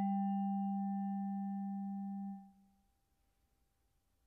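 Vibraphone notes ringing on after a chord struck just before: a strong low note and a fainter higher one held steadily. The low note is cut off about two and a half seconds in, and the higher one dies away soon after.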